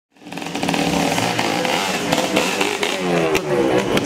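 A loud engine-like revving sound fades in quickly, with its pitch sliding upward several times in the last second and a half.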